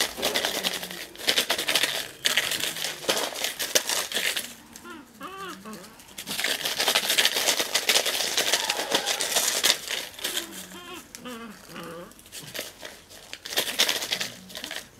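Plastic bottle crinkling in long stretches as a puppy bites and tugs at it, with quieter gaps about five seconds in and again near eleven seconds.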